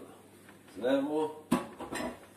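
A short spoken word, then a single sharp knock about one and a half seconds in, followed by a light clatter: a hard kitchen item set down at the sink.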